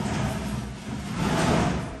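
Rough rubbing and scraping noise from work on a chest of drawers, swelling about a second and a half in.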